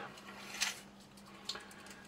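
Quiet room tone with a faint steady hum and two soft handling sounds, one about half a second in and one about a second and a half in.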